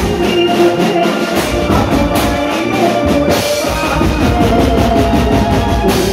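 Live band playing a Gujarati folk song for dandiya through a stage PA: a drum kit and other drums drive a fast, steady beat under a melody line.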